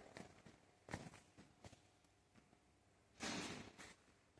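Near silence, with a few faint footsteps on a tiled floor and a brief rustle about three seconds in.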